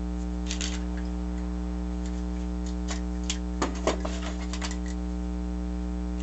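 Steady mains hum, with a scattering of light clicks and taps from hands handling paper and a ballpoint pen on a work surface. The strongest taps come about three and a half to four seconds in.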